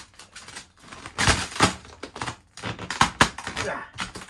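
Vinyl wrap film crackling and crinkling as it is pulled and stretched by hand over a car bumper, in a series of short rustling bursts, the strongest a little over a second in and around three seconds in.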